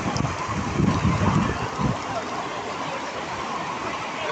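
Floodwater rushing down a street in a fast, muddy torrent: a steady rush of water.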